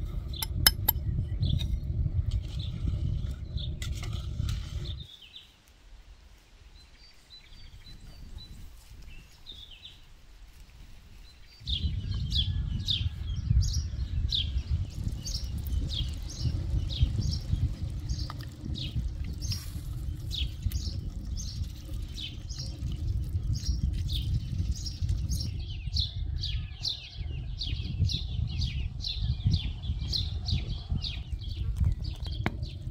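Small birds chirping in quick, repeated high notes, about two or three a second, over a low rumble that drops away for several seconds early on and then returns.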